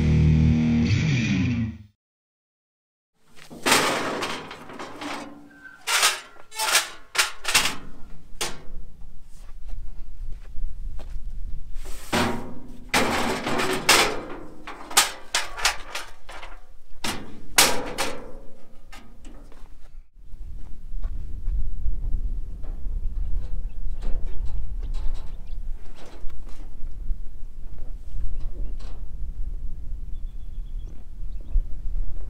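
Rock guitar music ends. After a short gap comes a long run of sharp metallic clanks and rattles from aluminium loading ramps being handled and hooked onto a steel box trailer. In the last ten seconds there is a steady low rumble with faint clicks.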